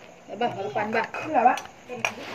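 Voices talking in the background with light clinks of dishes and cutlery.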